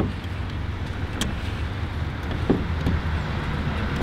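A steady low rumble with a few small, sharp clicks as an Allen key turns small screws into a car's hood panel.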